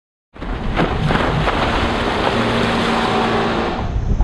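Motorboat under way: steady engine hum beneath rushing water and wind noise on the microphone, cutting in suddenly just after the start.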